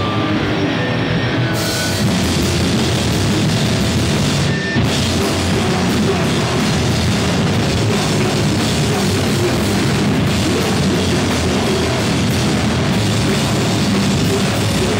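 Live rock band playing loud, with electric guitars and a drum kit. The cymbals and full kit fill in about a second and a half in.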